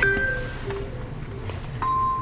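Quiet car cabin with the Mercedes E-Class engine idling as a low, steady rumble; the engine is running on five cylinders. Near the end a steady electronic beep tone starts.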